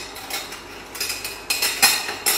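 A metal spoon scraping and tapping against a small metal bowl as grated ginger is scraped out into a blender cup: a string of short scratchy scrapes and clicks, loudest near the end.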